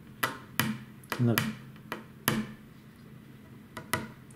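A fingernail picking at the peeling paint on the graphite frame of a Yonex VCORE 98 tennis racquet, a handful of irregular sharp clicks. The paint is coming away because it is not adhering to the smooth white graphite beneath.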